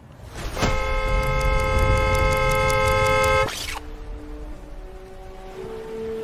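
A car horn sounds in one long, steady blast of about three seconds over a low rumble, then cuts off abruptly. Quieter sustained music notes follow.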